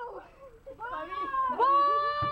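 A person's voice making wordless vocal sounds that bend up and down, then a high-pitched, drawn-out cry held steady in the last half second, a falsetto wail that sounds much like a meow.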